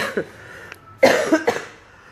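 A woman coughing twice: a short sharp cough at the start and a longer cough about a second later.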